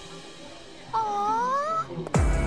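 A single short, high, voice-like call rising in pitch, lasting just under a second, about a second in.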